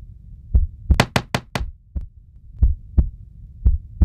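Heartbeat sound effect: pairs of low thumps recurring about once a second. About a second in, four quick, sharp clicks sound in a row.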